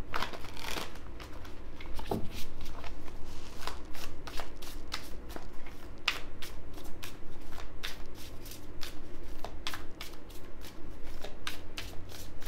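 A tarot deck shuffled by hand: a continuous, irregular run of quick card-on-card flicks and slaps, several a second.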